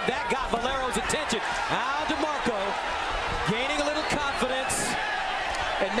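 Boxing arena crowd shouting and yelling in many overlapping voices, with sharp thuds of gloves landing as the fighters exchange hooks and body shots.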